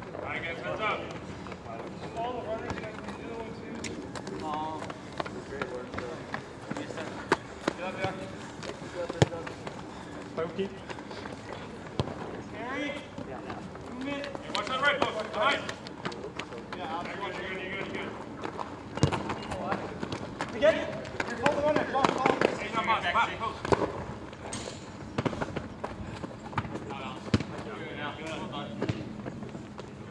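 Soccer players shouting and calling to one another across the court, with a few sharp knocks of the ball being struck.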